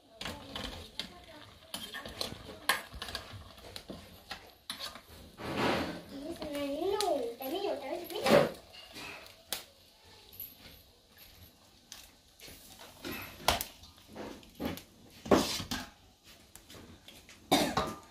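Metal cookware clattering and knocking: a lid coming off a boiling pot, and a wire skimmer scooping boiled greens out of the pot into a metal basin. Sharp knocks are scattered throughout.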